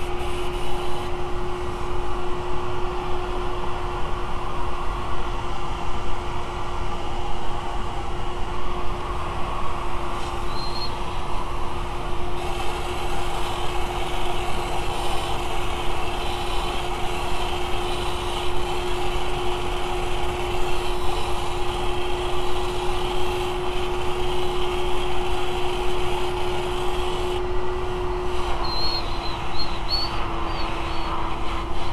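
Walnut-shell media blasting of the intake valves on a Volkswagen 2.0T engine: compressed air driving the media through the intake port gives a steady hiss, over the constant whine of a shop vacuum pulling the spent media and carbon out. The whine dips slightly in pitch near the end.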